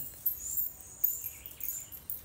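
Birds chirping: short, high chirps, the sharpest about a quarter second and a second in.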